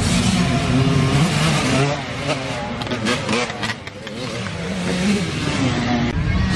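Several off-road dirt bikes racing past on a trail, engines revving up and down. The sound is loudest in the first two seconds, dips near the middle, then swells again.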